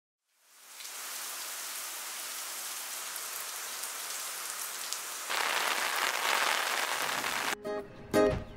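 Heavy rain pouring and splashing on a hard wet surface, fading in at the start. A little past halfway it steps up to a louder, harsher downpour, which cuts off suddenly just before the end as music begins.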